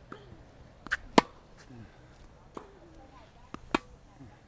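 Tennis balls struck on a hard court during a rally: five sharp racket hits and ball bounces, the loudest about a second in and another strong one near the end.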